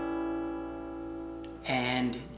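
Steel-string acoustic guitar: an A7 chord rings out and slowly fades, then a G chord is strummed about 1.7 seconds in.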